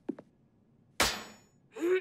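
A sudden sharp crack with a brief ringing tail about a second in, a cartoon sound-effect hit, followed near the end by a short vocal grunt.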